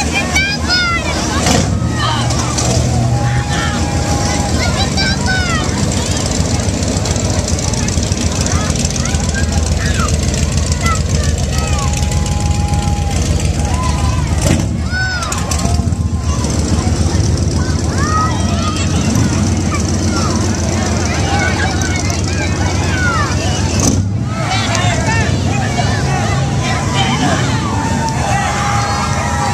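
Classic cars' engines rumbling steadily as they creep past at close range, with a crowd's voices and calls over them.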